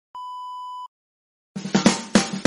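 A single steady test-tone beep of the kind played over TV colour bars, lasting under a second, then a short silence before music with plucked strings starts about one and a half seconds in.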